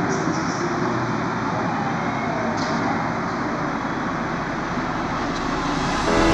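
A steady, even noise with a low rumble, like a traffic ambience, with no beat or words; a faint sliding tone passes through it about two seconds in.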